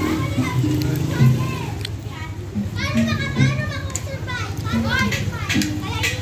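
Children's high-pitched voices and calls, with music playing in the background.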